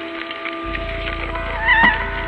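Live ambient electronic music from synthesizers: steady held tones, joined about two-thirds of a second in by a low, fast-pulsing drone, then near the end by a wavering lead tone with vibrato and a sharp click that is the loudest moment.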